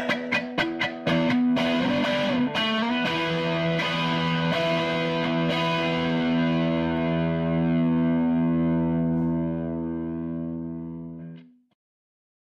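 Closing of a rock song on distorted electric guitar: a few short, sharp chord hits, then a final chord held and ringing out, slowly fading before it cuts off about eleven and a half seconds in.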